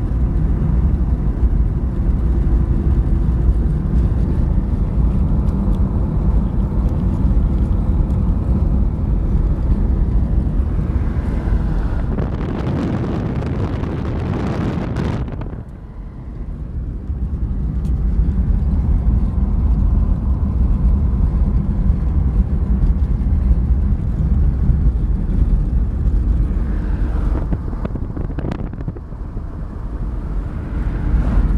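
Car driving along a highway, heard from inside the cabin: a steady low rumble of engine and road noise. About halfway through, a louder rushing noise builds for a few seconds and then cuts off sharply.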